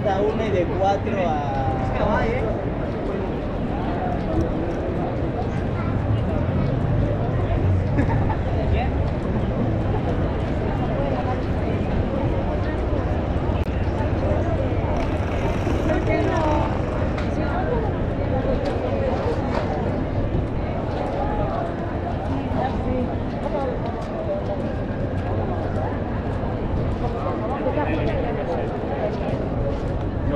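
Busy city-street ambience: passers-by talking nearby over a steady low rumble of road traffic.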